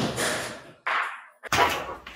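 A large plasterboard sheet being handled against metal studs: a sudden knock and scrape that fades out, then a second, shorter scrape about a second in.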